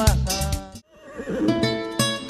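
Live band music that breaks off abruptly a little under a second in, then comes back in with held notes before the full band picks up again.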